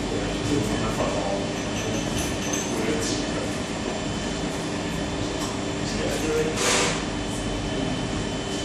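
Steady low rumbling room noise with a faint constant hum and a murmur of voices, and a brief rustle or scrape near the end.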